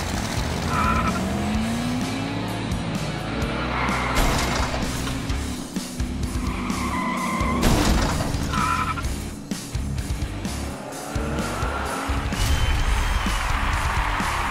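Race-car engine and tyre-squeal sound effects over background music: engines rev up and down in sweeps, with several short tyre squeals through the race.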